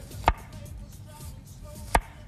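Two sharp knife strikes on a cutting board, about a second and a half apart, as a chef's knife slices a red onion into thin rounds.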